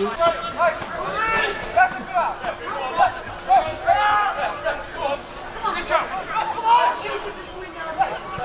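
Voices of players and spectators shouting and talking around a football pitch, with a few sharp thuds.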